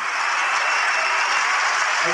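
Concert audience applauding, a steady even clatter, as the live rock band's playing ends.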